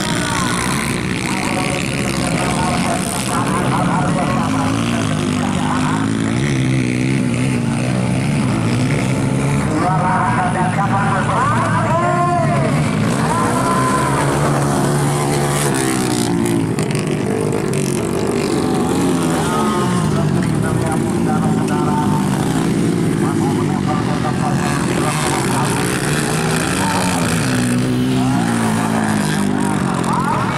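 Motocross dirt bike engines racing around a dirt track, their pitch rising and falling as the riders work the throttle through the corners and jumps.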